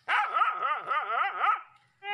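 A puppy crying from a hole in the earth, a run of high, wavering cries that stops about a second and a half in: the distress cries of a trapped puppy.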